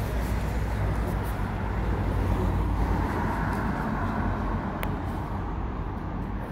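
Steady low rumble of outdoor noise, heaviest in the first half, with one sharp click near the end.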